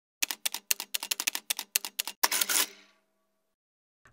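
Typewriter sound effect: a quick run of key strikes, about eight a second for two seconds, then a short rattling burst that fades out with a faint ringing tone.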